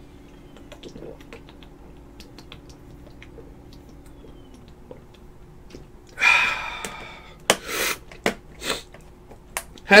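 A man drinking water: quiet room hum with faint clicks, then about six seconds in a loud breathy exhale, followed by several sharp clicks and knocks from the drink being handled and set down.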